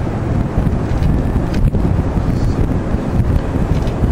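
Wind buffeting the microphone, a steady loud rumble.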